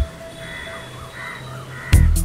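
A break in the beat: crows cawing a few times over a faint held musical tone, with the music's beat coming back in right at the end.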